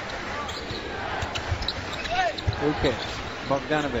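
Basketball being dribbled on a hardwood court, with a few separate thuds over the steady noise of an arena crowd.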